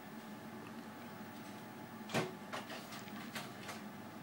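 35mm slide projector changing slides: a loud clunk about two seconds in, then a quick run of lighter clicks as the slide mechanism cycles, over the projector's steady fan hum.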